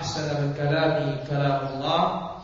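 A man's voice chanting Arabic recitation in a melodic style, drawing out long, steady notes.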